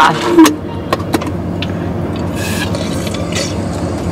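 Steady low hum inside a car cabin, with a few light clicks and rustles as a straw and plastic cups are handled.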